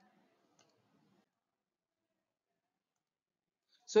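Near silence, with one faint click about half a second in. A man's voice starts just before the end.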